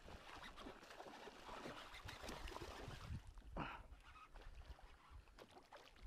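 Faint handling sounds from a small fishing boat: a low rumble with small clicks and knocks, and one brief squeak about three and a half seconds in.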